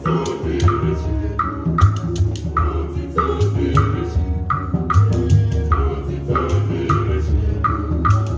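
Traditional percussion playing a steady beat: hand drums under a sharp, clacking stroke that repeats a little more than twice a second.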